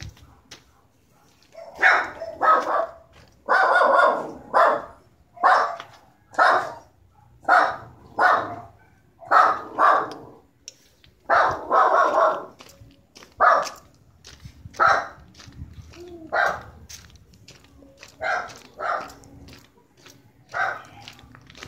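A dog barking over and over, about one bark a second and sometimes two in quick succession, starting about two seconds in.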